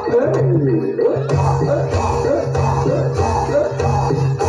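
Live Javanese gamelan music for a barongan dance: a wavering, gliding melody line over a steady low hum, with regular drum strokes.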